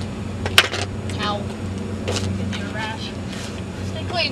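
A skateboard clacks once, sharply, on the asphalt about half a second in, followed by a few lighter knocks. Faint voices talk after it, over a steady low hum.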